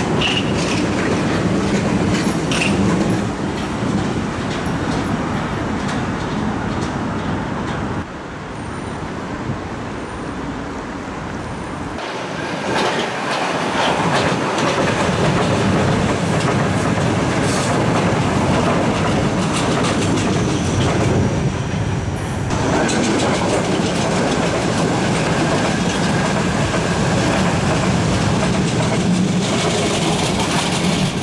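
Vienna U-Bahn metro trains running past on the open track, steel wheels on rails. The sound drops abruptly about a quarter of the way in, builds back over the next few seconds, and changes character again past the two-thirds mark.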